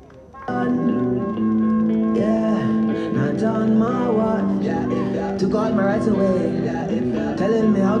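A song with guitar and singing played over a stadium's public-address speakers, starting suddenly about half a second in.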